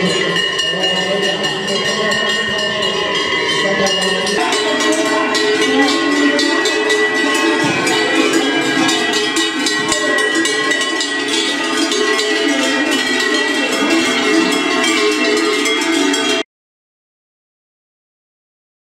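Many large cowbells clanging continuously as a herd of cattle walks in procession with bells hung from their necks. The clanging cuts off suddenly near the end.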